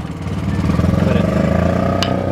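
A motor vehicle engine running, heard from inside a car; it grows louder over the first second, then holds steady.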